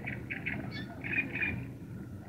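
A bird calling from the riverside meadow: a series of short, scratchy notes, about six of them in quick succession with a stronger pair about a second in, over a steady low background.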